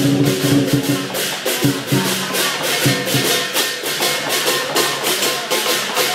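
Lion dance percussion playing: rapid, evenly repeated cymbal clashes, about four a second, with the deep lion dance drum strongest in the first second.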